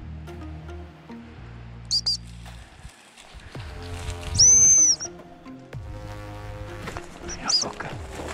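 Background music playing, with a high-pitched gundog whistle over it: two short pips about two seconds in, one long loud blast around the middle, and two more short pips near the end. They are whistle commands to a spaniel hunting cover.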